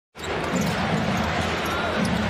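Steady arena crowd noise during an NBA game, with a basketball being dribbled on the hardwood court. It comes in abruptly just after the start.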